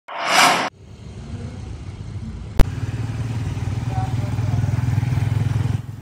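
A brief whoosh at the very start, then a motorcycle engine running and growing steadily louder as it approaches, with a single sharp click about two and a half seconds in.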